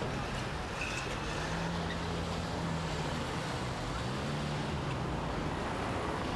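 A car driving away: a low engine hum over steady street traffic noise.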